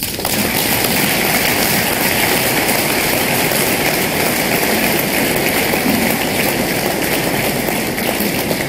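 Audience applauding: a dense, steady clatter of many hands clapping at once.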